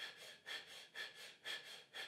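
A person doing rapid, shallow breathing: quick sharp breaths in and out, about two full breaths a second. This is the fast-paced stage of a breathing exercise, nine quick shallow breaths before one slow, deep tenth breath.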